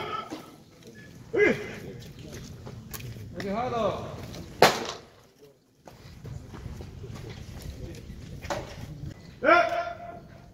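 A pitched baseball smacking into a catcher's mitt with one sharp pop about halfway through, between short calls from men's voices.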